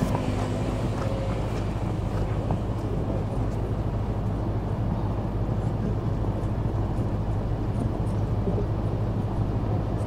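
A steady low rumble runs at an even level throughout, with a few faint ticks above it.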